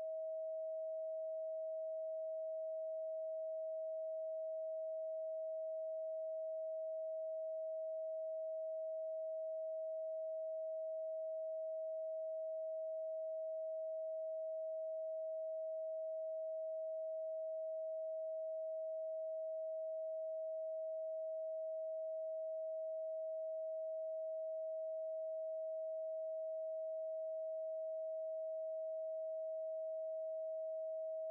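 A steady 639 Hz pure sine tone, held at one unchanging pitch and level.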